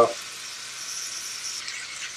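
Diced chicken and mixed vegetables sizzling in a cast-iron skillet as they are stirred with a silicone spatula. It is a soft, steady hiss.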